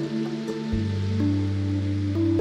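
Instrumental background music, calm and slow, with held notes over a sustained bass; the bass moves to a new note a little under a second in.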